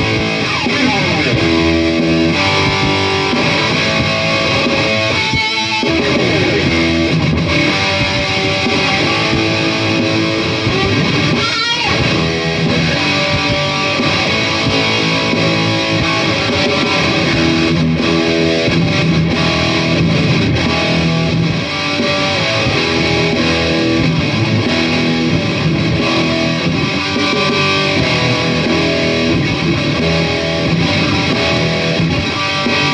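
Distorted Dean ML electric guitar shredding hard-rock riffs and lead lines through a Marshall Code 50 modelling amp, over a hard-rock drum loop at 90 bpm. Two quick sweeping slides stand out, about five and twelve seconds in.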